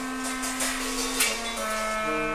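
Free-jazz improvisation on clarinet, tenor saxophone and drums: a long held reed note drops slightly in pitch about halfway through, over a couple of washy cymbal strikes.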